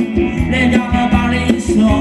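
Live Thai ramwong dance music from a band played loud over the sound system: a singer over instruments with a steady drum beat.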